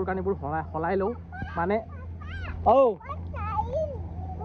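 Voices calling out in short, high-pitched calls that rise and fall in pitch, a young child's voice among them, the loudest call about three seconds in.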